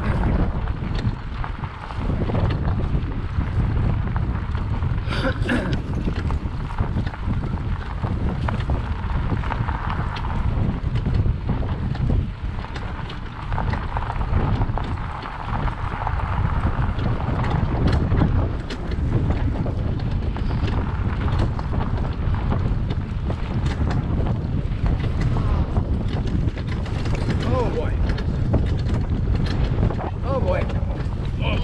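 Steady wind buffeting a bike-mounted camera's microphone as a bicycle rides along a rough dirt double-track, with a constant low rumble.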